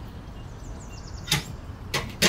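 Two sharp clicks from a wall-mounted metal mailbox being opened by hand, one about two-thirds of the way in and another near the end, over a steady low background rumble.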